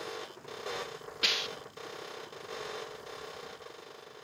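Sparse, quiet break in a song: creaking, mechanical-sounding textures over a steady faint hum, with a short hiss about a second in.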